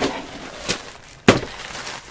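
Plastic zip-top bags of craft embellishments rustling as they are handled, with a light click near the middle and a sharp knock a little past halfway as something is set down on the table.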